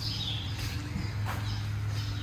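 Small birds chirping now and then over a steady low hum.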